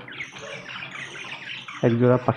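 A flock of caged budgerigars chirping and chattering, many short warbling calls overlapping.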